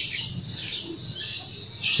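Quiet outdoor background with a few brief, faint bird chirps.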